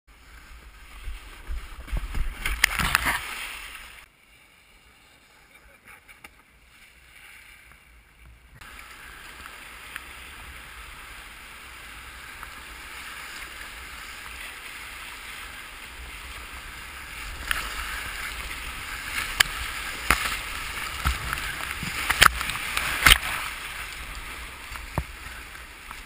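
A whitewater kayak sliding off a muddy bank with a loud burst of scraping and splashing, then rushing rapids around the hull that grow louder, with sharp paddle splashes in the last several seconds.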